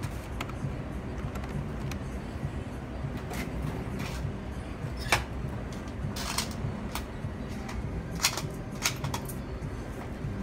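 Scattered keystroke clicks from a cashier's point-of-sale keyboard, single presses a second or more apart with a short run about six seconds in, over a steady low hum.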